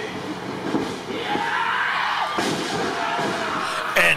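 Wrestlers crashing onto the ring canvas as a suplex is reversed, with the live crowd noise swelling about a second in.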